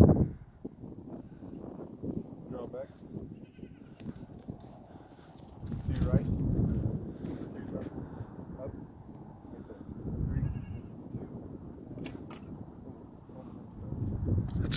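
Compound bow shot: a sharp snap of the string on release, followed a fraction of a second later by a second click as the arrow strikes the hay-bale target, about twelve seconds in. Before it come low muffled sounds of handling and a few faint high wavering calls.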